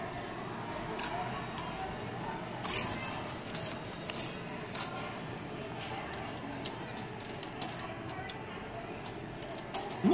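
Small balls knocking against the hard plastic of an arcade ball-toss game: a series of sharp clacks, the loudest a clatter about three seconds in, over steady arcade background noise.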